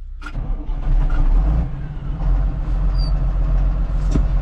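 A tractor's diesel engine running, heard from inside the cab. It comes up loud about half a second in and then runs steadily.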